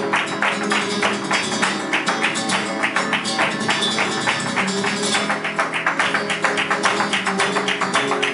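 Live flamenco: acoustic guitar playing under a dense run of rapid, sharp percussive strikes from rhythmic handclaps (palmas) and the dancer's footwork, steady throughout.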